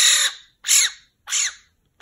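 Black-billed magpie calling with harsh, noisy calls: a long call that ends about half a second in, followed by two short calls.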